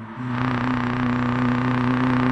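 Live-looped beatbox: a steady low bass drone with a loud hissing noise sound layered over it, starting a moment in.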